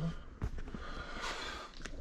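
Quiet handling of items on a cluttered shelf: two small sharp clicks, one about half a second in and one near the end, with a short breath through the nose between them.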